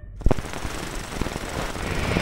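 Logo-intro sound effect: a dense crackling rattle full of irregular clicks starts suddenly, with a sharp crack about a quarter second in, and grows louder.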